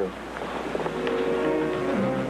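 Steady rushing noise of a moving railway carriage, with several steady tones held together coming in under it about a second in.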